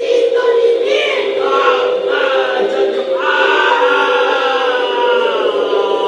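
Choir-like singing with music: sustained held voices, with a long note that starts about three seconds in and slowly falls in pitch.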